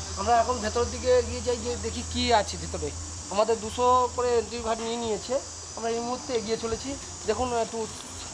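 A man talking, over a steady high-pitched drone of insects that never lets up.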